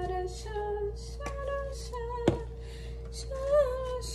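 A woman singing a melody in held, gliding notes, with a steady hum under it. A faint click about a second in and a sharp click a little after two seconds.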